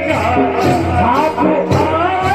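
Rajasthani folk music for the Gindar stick dance: singing over a sustained melody with a regular beat.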